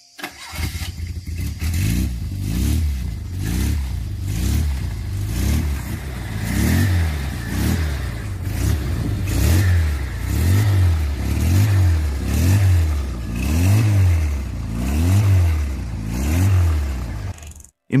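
Shifty 900 motorcycle's Fiat 127 903 cc inline-four engine being revved again and again with the throttle, its pitch rising and falling about once a second. The sound cuts off suddenly near the end.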